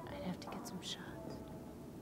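A short breathy whisper, with faint sustained music tones underneath.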